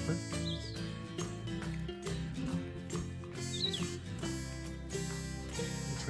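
Background music, with a bird chirping briefly twice, about half a second in and near four seconds in.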